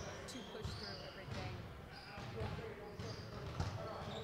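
Basketballs being dribbled on a court in the background, irregular low thumps, with faint voices in the room.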